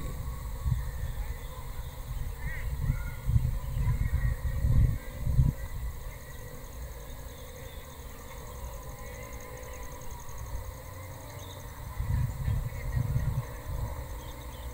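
Wind gusting on the microphone as low, uneven rumbles, strongest about four to five seconds in and again near the end. A faint, high, pulsing insect buzz runs underneath.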